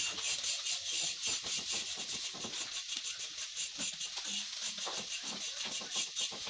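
A paint-soaked cloth rubbing red paint onto a wooden rail: a rhythmic rasping hiss of quick back-and-forth strokes, a few each second.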